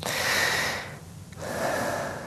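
A man drawing two loud breaths, the first lasting just under a second and the second beginning about a second and a half in.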